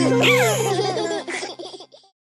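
Children laughing together over the last held note of a song's music, the laughter breaking up and both fading out near the end.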